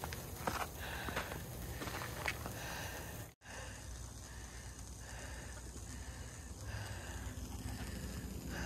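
High-voltage transmission lines buzzing and sizzling with corona discharge, heard as a steady hiss over a faint low hum, in humid air. The sound breaks off for an instant a little over three seconds in, then carries on unchanged.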